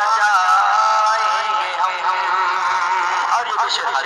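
A young man's voice singing a naat, an Urdu devotional poem, in long held notes that waver up and down, giving way to shorter notes about halfway through.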